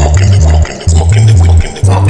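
Electronic dance track blending techno, house and trap: a loud, deep bass line in long notes that step in pitch, with short gaps between them, under crisp percussion hits.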